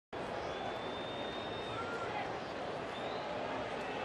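Ballpark crowd murmuring steadily between pitches, with a few faint high whistles over the noise.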